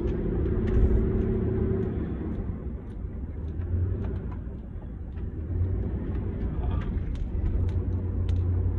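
Low, steady rumble of a car heard from inside the cabin, with a faint steady hum over the first two seconds and a few light clicks.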